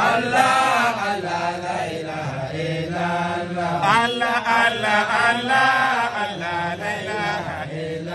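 Male voices chanting 'Allah' over and over in long, drawn-out melodic phrases: a Sufi dhikr chant.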